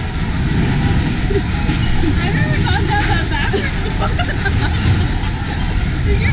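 Spinning roller coaster car rolling along its steel track with a steady low rumble, and riders' voices heard faintly over it.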